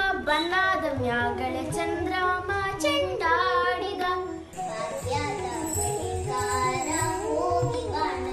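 A young girl singing over instrumental backing music. About halfway through, the sound switches to another child singing with backing music.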